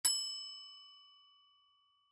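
A single bell-like chime struck once, its clear ringing tone fading away over about a second and a half. It marks the break between one text and the next in the listening test.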